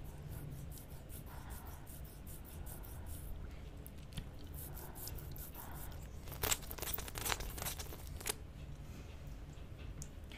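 Close-miked wet mouth sounds of licking and sucking a hard twisted lollipop: scattered wet clicks and smacks of tongue and lips on the candy, with a louder run of clicks about six to eight seconds in.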